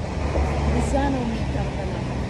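Steady low outdoor rumble with faint voices talking in the background.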